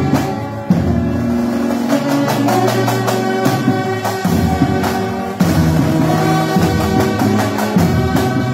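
Brass band of euphoniums, tubas and saxophones with a drum playing, holding full chords that change every second or two over drum beats.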